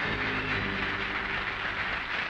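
Studio audience applauding steadily, with the show's theme music dying away under it.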